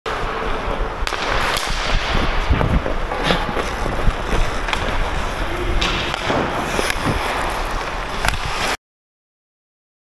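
Ice hockey play: skates scraping across the ice, with sharp clacks of sticks and puck at irregular moments. The sound cuts off suddenly near the end.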